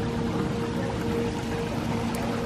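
Water running steadily down a stacked-stone waterfall wall, with held tones of background music underneath.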